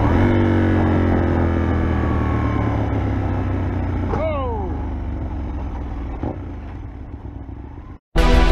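Motorcycle engine running with wind noise over the microphone, its note falling steadily as the bike slows and fading. About four seconds in, a brief squeal rises and falls.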